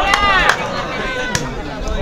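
A shout, then two sharp slaps of a volleyball being struck by hand about a second apart, over crowd chatter.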